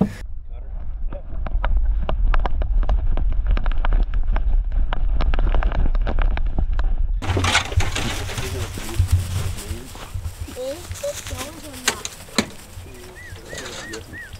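Handling and movement noise from a camera strapped to a beagle's harness: a low rumble with a rapid run of clicks and rattles for about the first seven seconds. After that, open-air rustling through grass and brush with faint voices, and a few short chirps near the end.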